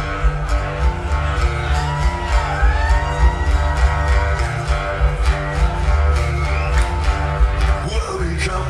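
Live acoustic blues: two acoustic guitars playing a slow blues over a deep bass line.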